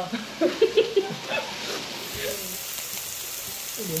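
Food frying with a steady sizzle that sets in about two seconds in, after a few brief murmured words.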